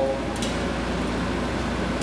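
Steady mechanical hum with an even hiss, with one faint click about half a second in.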